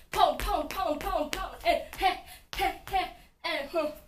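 A woman vocalizing the dance count in short, wordless sung syllables like "ha" and "taa", about three a second, each falling in pitch, with sharp taps in among them.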